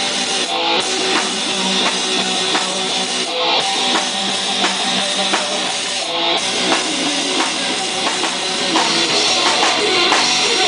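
Live rock band playing: electric guitars over a steady drum kit beat.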